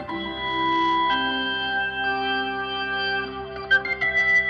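Instrumental progressive rock: keyboards playing sustained, organ-like chords that shift every second or so, with a few short percussive hits near the end.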